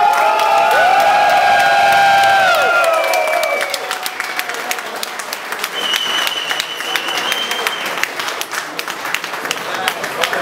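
Audience applauding with dense clapping. Over the first three seconds a long held pitched sound rides over it, and a thin steady high tone sounds about six to eight seconds in.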